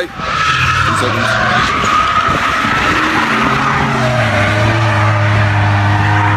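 Drift car sliding, its tyres squealing and skidding while the engine is held high in the revs. The engine note steadies and holds from about four seconds in.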